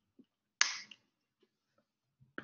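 A single sharp snap about half a second in, dying away quickly, with a few faint clicks before and after it, heard through a video call's audio.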